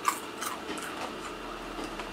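Two faint, short clicks in the first half second, then quiet room noise.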